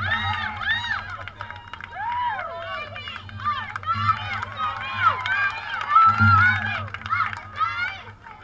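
Many girls' voices calling and chanting over one another: a softball team cheering from the dugout.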